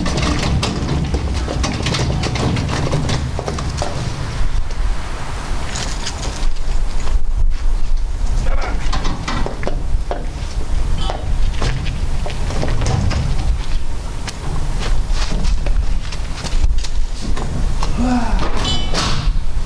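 Homemade steel car rotisserie on large casters, loaded with a car body shell, being pushed across a rough gravel yard: the wheels crunch and rattle over the stones, with irregular clicks and knocks from the frame.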